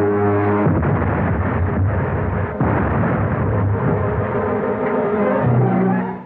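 Dramatic orchestral film-score music with held chords, under a loud rough rushing noise that breaks in under a second in and again around two and a half seconds: sound effects of a rocket ship attacking with bombs.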